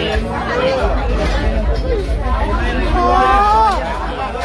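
Several people talking and chattering at once, with one voice calling out louder near the end.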